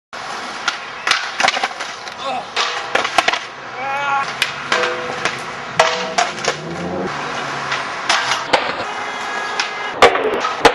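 Skateboard session sounds: wheels rolling on hard ground with repeated sharp clacks and knocks of boards, and voices calling out now and then.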